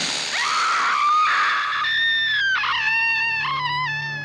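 Horror film trailer soundtrack: a shrill, high-pitched scream that wavers and steps in pitch through the second half, over music with a low sustained note.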